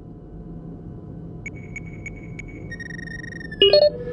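Synthesized sci-fi computer sound effects over a low steady drone: about five short high beeps, then a held high tone, then near the end a loud burst of stepped electronic bleeps, a signal-acquisition cue.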